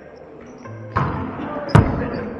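A volleyball struck twice during a rally on an indoor court, once about a second in and again, louder, near the end, each hit echoing in the gym hall.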